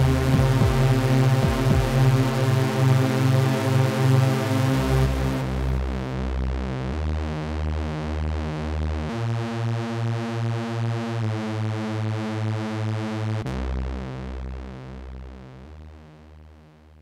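Live electronic music played on synthesizers: a pulsing synth bass line that changes note about every two seconds under repeating chords. A hissing noise layer cuts off about five seconds in, and the whole piece fades out over the last few seconds.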